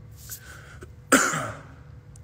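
A man coughs once, loudly and close to the phone's microphone, about a second in, after a short intake of breath.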